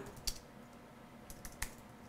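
Faint keystrokes on a computer keyboard: a few separate key taps while typing, one near the start and a small cluster in the second half.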